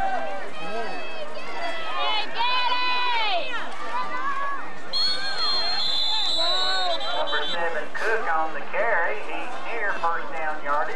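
Spectators shouting and cheering as a football play is run, with no clear words. About halfway through, a steady high whistle sounds for two to three seconds, as from a referee's whistle stopping the play.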